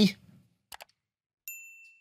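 A faint click, then about one and a half seconds in a single bright bell-like ding that rings and fades out: a notification-bell sound effect of the kind laid over a subscribe-button animation.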